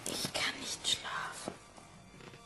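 Whispered speech, breathy and without clear words, for about the first second and a half.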